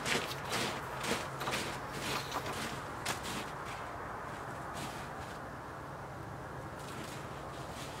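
Footsteps on snow-covered ground, a step about every half second for the first three seconds or so, then stopping, leaving only a faint steady low hum.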